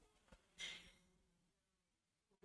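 Near silence: room tone, with one faint short breath a little over half a second in.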